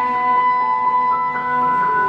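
Clarinet, cello and piano trio playing contemporary classical chamber music in sustained held notes; a high note is held steady for about a second and a half before the notes change near the end.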